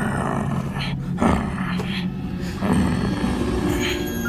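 Animal-like growls from a man playing a dog creature, coming in rough bursts about every second and a half as he crouches and sniffs.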